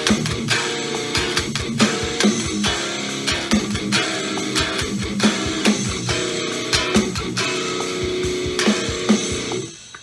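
A heavy, distorted electric guitar rhythm part, strummed chords run through a tube-screamer pedal and a high-gain amp simulator, played along with a drum track. The music stops suddenly near the end as the take ends.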